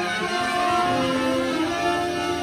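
New Orleans-style brass band playing live: trumpets, trombone, tenor saxophone and sousaphone sounding together in long held notes over the drums.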